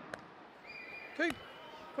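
Low background hum of an arena crowd, with a man's single short "okay" about a second in. A faint steady high tone is held for about a second.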